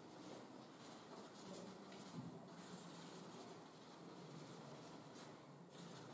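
Marker pen writing on flip-chart paper: faint, irregular short scratching strokes.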